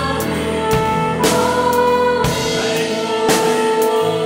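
Flugelhorn playing a slow worship-song melody in long held notes, one sustained through the second half. It is backed by a live drum kit with several cymbal crashes, and by keyboard.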